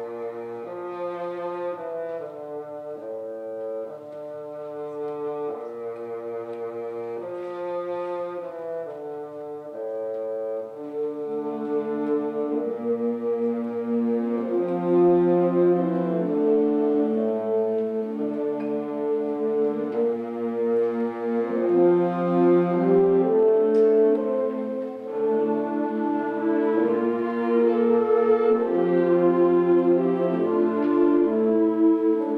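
Concert wind band playing slow, sustained chords with brass prominent, the chords changing about once a second and the playing growing louder from about ten seconds in.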